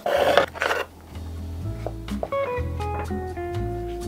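Background music: plucked-string notes over a steady bass line. In the first second, a brief rasping handling noise as the plastic tofu press is pulled apart.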